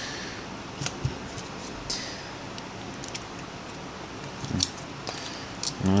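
Faint clicks and rubbing as an iPhone 5 is handled in the fingers and its screen is pressed back into the case.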